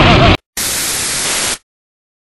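A loud, dense rumble cuts off abruptly about a third of a second in. It is followed by about a second of even TV static hiss and then dead silence, typical of a television being switched between channels.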